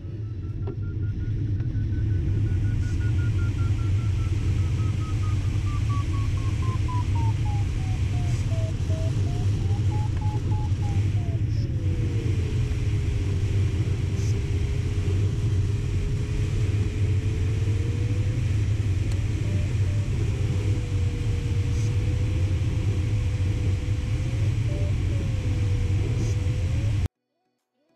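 Steady rushing airflow noise in the cockpit of a Schempp-Hirth Ventus 2cT sailplane in flight. Over it the electronic variometer's single tone slides in pitch: high at first, falling, briefly rising again, then settling low for the second half. Its pitch follows the glider's rate of climb, so the low tone means weaker lift or sink.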